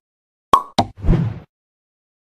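Sound effects for an animated "Thanks for watching" end title: two sharp pops about a third of a second apart, then a short low burst lasting under half a second.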